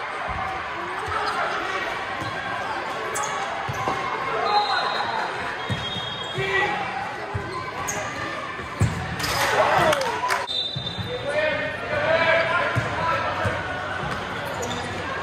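Futsal match in an echoing sports hall: the ball being kicked and bouncing on the court in scattered knocks, with players and spectators calling out throughout, loudest about nine seconds in. A few short high squeaks sound in the middle.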